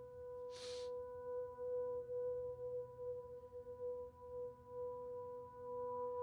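Ambient background music: one sustained ringing tone with a slow pulse, held throughout. Higher overtones build in near the end.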